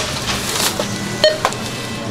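Supermarket checkout barcode scanner beeping twice, short and sharp, about a second and a quarter apart, over a steady low hum and store background noise.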